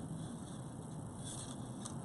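Faint handling noise of leather cord being worked loose from a knot: a brief soft rustle partway through and a light click near the end, over quiet room tone.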